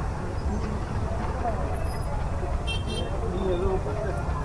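Busy street traffic: a steady low rumble of auto-rickshaw and other vehicle engines, with scattered voices of passers-by. Two short high-pitched beeps come near the end.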